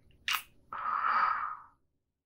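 A man's close-miked kiss: one short, sharp lip smack, then a breathy exhale of about a second that fades out.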